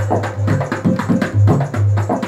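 Dholak played by hand in a quick rhythm: deep booming strokes on the bass head mixed with sharp slaps on the treble head, several strokes a second.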